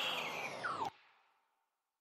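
The end of a rap track's recorded outro: the sound slides down in pitch like a tape slowing to a stop and cuts off abruptly about a second in.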